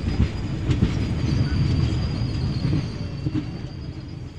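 Trivandrum–Chennai Superfast Mail passenger train running away down the track, its wheels rumbling and knocking over the rail joints. The noise fades over the last second or so as the rear coaches recede.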